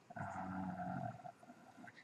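A man's drawn-out hesitation 'uhh', held on one steady pitch for about a second, then quiet.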